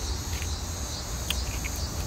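A steady, high-pitched chorus of insects chirping outdoors, with a low rumble underneath.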